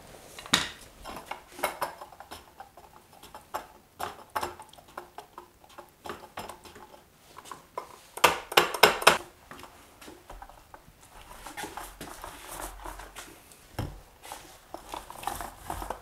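Paint roller being dipped and worked in a plastic bucket of liquid waterproofing membrane: scattered knocks and clinks of its metal frame against the bucket, with a cluster of louder knocks about eight seconds in. Softer, duller sound follows near the end as the loaded roller is pushed onto the cement-board wall.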